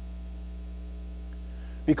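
Steady electrical mains hum in the sound system: a low, unchanging buzz with a ladder of evenly spaced overtones. A man's voice cuts in just before the end.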